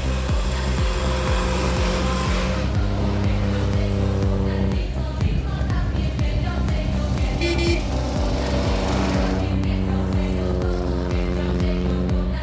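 Background music with a steady beat and sustained chords, with car engine sound mixed in beneath it.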